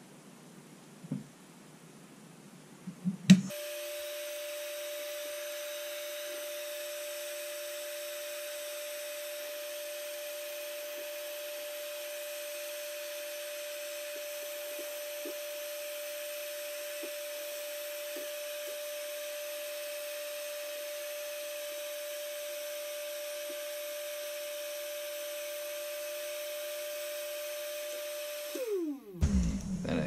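Black and Decker heat gun switched on with a sharp click about three seconds in, then running steadily with a fan whine and a rush of hot air. Near the end it is switched off, and the whine falls as the fan spins down.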